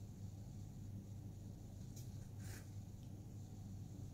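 Low steady background hum, with two brief faint scratchy sounds just past the middle.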